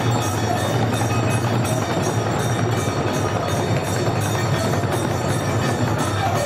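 A group of khol drums, the Bengali clay barrel drums of kirtan, played together in a loud, fast, unbroken rhythm, with bright ringing percussion sounding above the drums.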